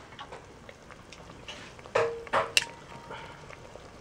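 Metal tongs clinking and scraping against an aluminium cooking pot of soup, with small clicks throughout and two sharp clinks about halfway through.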